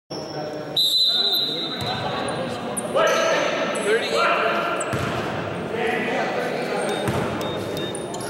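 Basketball bouncing on a hardwood gym floor amid players' voices, echoing in a large gymnasium, with a steady high tone for about two seconds near the start.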